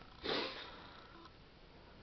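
A single short sniff about a quarter of a second in.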